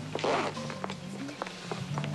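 A zipper on a leather bag pulled open in one short rasp near the start, under low, sustained suspense music with scattered short tones.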